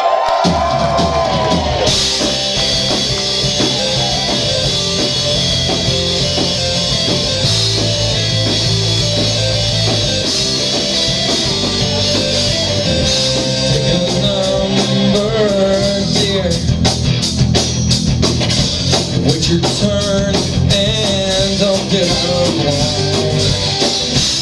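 Live rock band playing an instrumental stretch of a song with electric guitars, bass and drums carrying a melodic lead line. The drum hits get busier in the second half.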